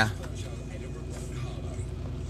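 Steady low hum of a car heard from inside its cabin.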